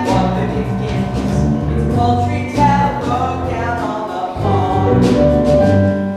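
Live musical-theatre number: a pit band with keyboard and drums playing while a young cast sings.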